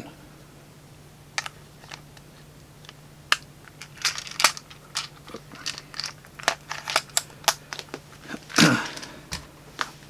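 Clear plastic pill organizer being handled and closed: a string of sharp plastic clicks and taps as its snap lids shut and it is moved, with a louder rustle near the end, over a faint steady hum.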